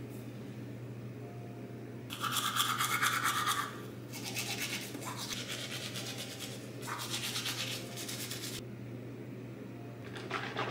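Teeth being brushed with a toothbrush: a short, loud spell of scrubbing about two seconds in, then a longer stretch of brushing that stops a little before the end.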